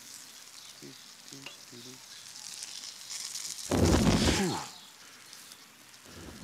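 Charcoal grill fire sizzling and crackling, with a loud low whoosh about four seconds in as the flames flare up.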